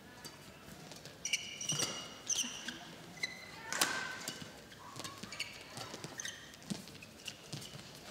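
Badminton rally: a string of sharp racket hits on the shuttlecock about once a second, mixed with short high squeaks of court shoes on the mat.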